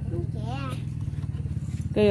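Honda step-through motorcycle's small engine idling steadily, a low, even rumble.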